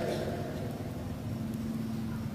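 Steady low background noise with a faint, even hum underneath.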